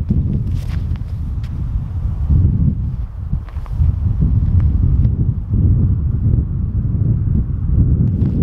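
Wind buffeting the microphone, a steady low rumble, with a few faint clicks and light footsteps on snow.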